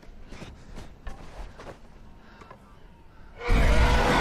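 A TIE fighter flying past, its engine sound starting suddenly and loud about three and a half seconds in.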